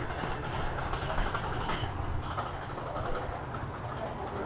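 Steady outdoor background noise, mostly a low rumble, with no distinct events.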